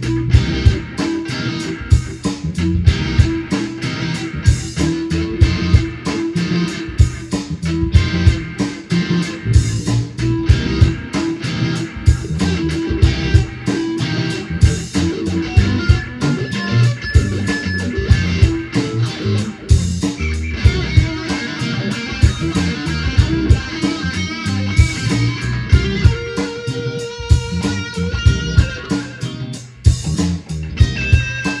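A 1996 USA G&L Legacy single-coil electric guitar improvising blues-funk lead lines over a funky backing track of drums and bass. The drums keep a steady beat, and the guitar holds a few long notes in the second half.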